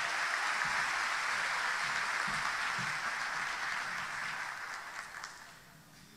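Audience applauding, steady at first and then dying away over the last couple of seconds.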